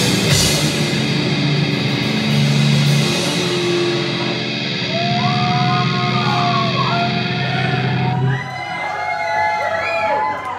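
Live heavy metal band with distorted electric guitars ending a song: a last burst of drums and guitar, then a held guitar chord rings out. From about halfway through, high wavering notes bend up and down over the chord, and the low end drops away shortly before the end.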